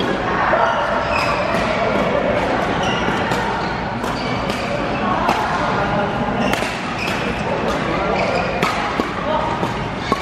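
Badminton doubles rally: sharp cracks of rackets hitting the shuttlecock about once a second, with short high squeaks of court shoes on the mat. Voices murmur in the background throughout.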